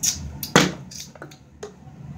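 Plastic water bottle flipped and hitting a hard floor: two loud knocks about half a second apart, then a couple of fainter taps as it settles.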